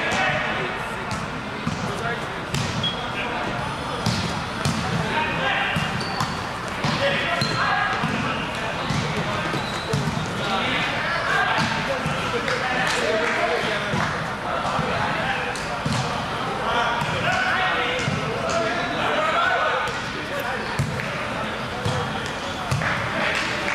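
Volleyball rally in a large gym: repeated sharp smacks of the ball being hit and bouncing, over a steady hubbub of indistinct players' and onlookers' voices.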